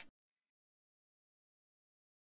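Near silence: the soundtrack goes blank right after the narration's last word cuts off at the very start.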